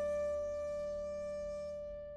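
The last plucked koto notes of a piece ringing out and slowly fading away as the music ends.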